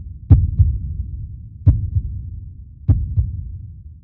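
Heartbeat sound effect: three slow double thumps, a stronger beat followed by a weaker one, each pair about a second and a third apart, deep and low.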